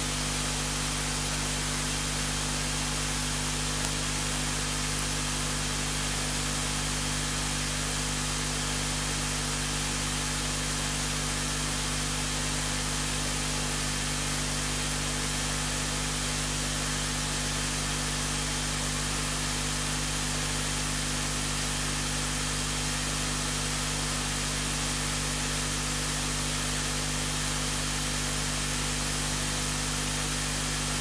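Steady hiss with a low electrical hum underneath, unchanging throughout: the noise floor of the recording.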